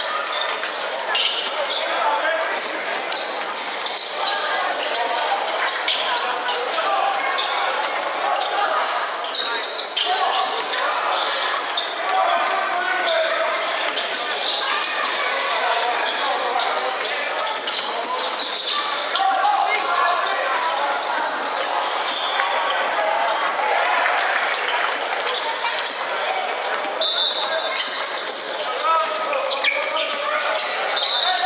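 Basketball game sounds in a large indoor stadium: a basketball bouncing on the wooden court amid steady chatter from players and spectators, all echoing in the hall.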